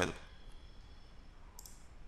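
Faint computer mouse clicks near the end, over low background hiss.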